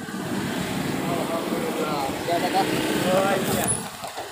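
Steady low rumble of a motorcycle engine idling close by, under indistinct talking.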